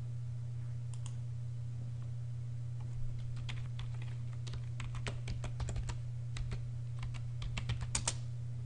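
Typing on a computer keyboard to enter a login password: a key press about a second in, then a quick run of keystrokes from about three seconds in, the last ones loudest near the end. A steady low hum runs underneath.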